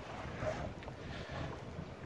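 Engine of an approaching wooden harbour passenger boat, running with a steady low hum as it comes in towards the pier.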